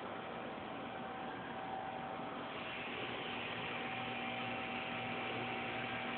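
Steady background hiss with a faint, even hum underneath; no distinct sound stands out.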